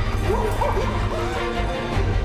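Music with a steady low bass runs throughout. Over it, a young elephant gives a few short rising-and-falling squeals, starting about a third of a second in.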